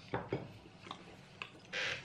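Chewing a crunchy pastry mince tart, heard as a few soft crunches and mouth clicks, then a short hiss near the end.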